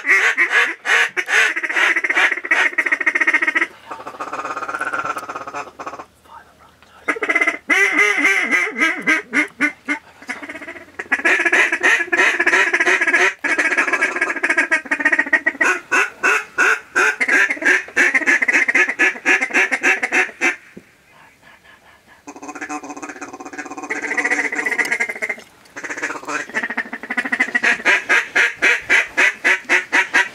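Ducks quacking: long runs of rapid, evenly repeated quacks, broken by a few short pauses.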